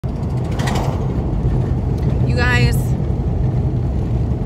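Steady low rumble of a car running, heard inside the cabin, with a short voice sound a little past halfway.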